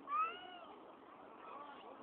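A young child's single high-pitched shout, rising then falling and lasting about half a second, just after the start, followed by faint children's voices.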